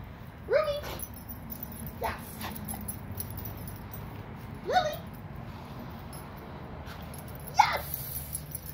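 Dogs at play giving four short, rising yips, spaced a second and a half to three seconds apart, the last the loudest.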